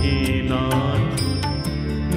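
Background devotional music: a chanted, mantra-like vocal over sustained instruments and a steady percussive beat.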